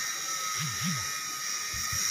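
A steady high-pitched whine over a hiss of outdoor background, with two faint low rising-and-falling sounds about half a second to a second in.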